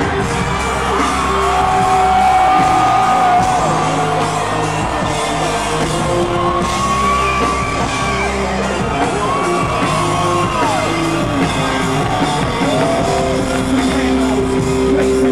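Live hip-hop concert music played loud through a stadium sound system, heard from the stands, with a steady bass line and several long held vocal notes that slide off at their ends.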